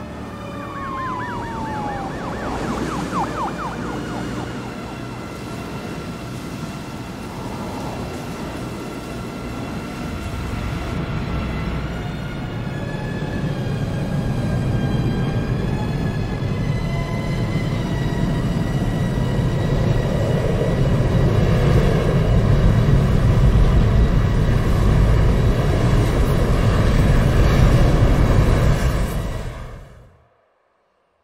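Deep rushing wind of a tornado building steadily louder over sustained tense music, with a siren wailing and falling in pitch in the first couple of seconds. Everything cuts off abruptly at the end.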